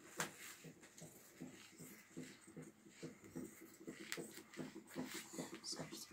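Large tailor's shears cutting through folded dress fabric: a faint, quick run of snips, about three a second, with a sharper click near the start.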